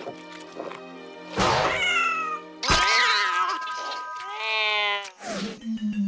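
A cartoon cat character's loud, wordless cries, several in a row with sliding pitch, starting about a second and a half in and ending around five seconds, over cartoon background music.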